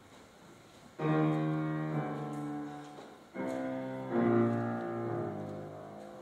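Piano playing the slow opening chords of an aria's introduction. About a second in, a chord is struck and left to ring and fade, and two more follow at about three and four seconds.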